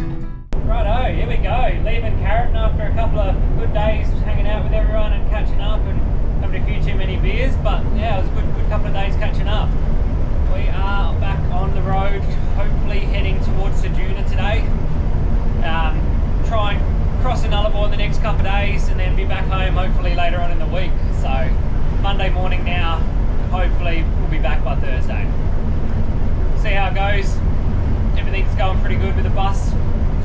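Steady low rumble of a bus driving at highway speed, heard from inside the cabin, with indistinct voices over it.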